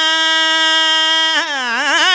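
A man's amplified singing voice holding one long, steady high note, then sliding down and back up in pitch near the end, as in a sung qasida.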